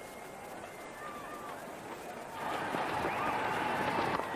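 Cricket stadium crowd murmuring, then swelling into a loud cheer about two and a half seconds in as the batsman hits a big shot.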